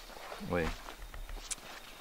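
Faint handling noise of a fabric backpack being grabbed and moved, with a few light clicks and rustles. A short spoken 'ué' comes about half a second in.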